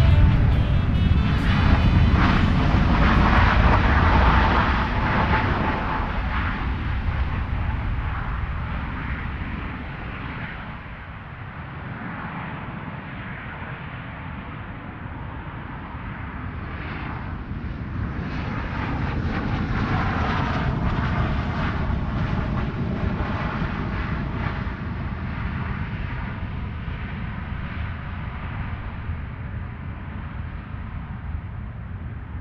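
Jet aircraft engine noise, loud at first and fading over about ten seconds, then swelling again about twenty seconds in and fading away.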